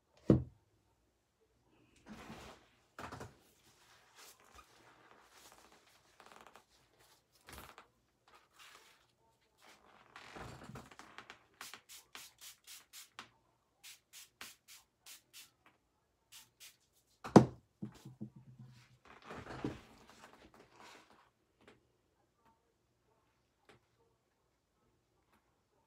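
Table-top handling sounds while preparing an acrylic pour painting: a knock just after the start, paper towels rustling, then a run of about a dozen quick, evenly spaced spritzes from a small spray bottle dampening a paper towel. A loud thump follows, and then more rustling as the damp paper towel is laid on the wet canvas.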